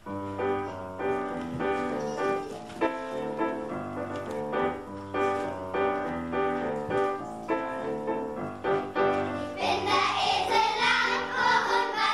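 Piano playing an instrumental passage, joined about nine and a half seconds in by a children's choir singing along with it.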